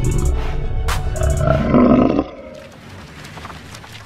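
A loud roar sound effect over trailer music with drum hits. The roar builds for about two seconds, cuts off sharply, and leaves a quieter echoing tail.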